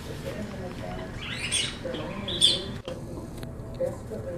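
A puppy chewing a pink rubber squeaky toy makes it squeak twice: a longer squeak about a second and a half in, then a shorter, louder one a second later.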